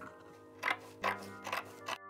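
Scissors cutting through muslin fabric: four snips in quick succession, about one every 0.4 s, over background keyboard music.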